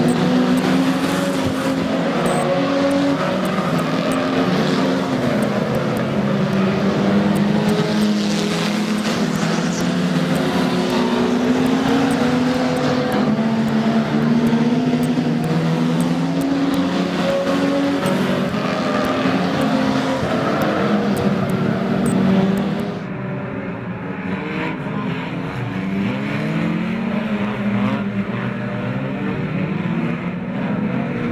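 Several stock car engines running together as a pack laps a shale oval, their pitch rising and falling with the throttle. About three-quarters of the way through the sound changes abruptly and becomes duller, with less hiss.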